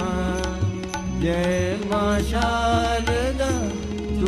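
A man singing devotional verse in long held notes that glide between pitches, over instrumental accompaniment with a steady held low note and a drum beating.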